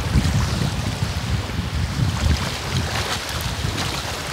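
Wind buffeting the microphone in an irregular low rumble, over the splash and wash of shallow seawater around a person standing in the sea.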